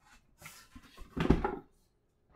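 Cardboard and paperboard packaging being handled: a brief rustle about half a second in, then a dull knock as a pipe box is picked up, with a short spoken word over it.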